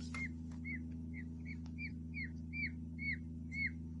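Newborn peafowl chicks peeping: a steady series of short, high peeps, each falling in pitch at its end, about three a second.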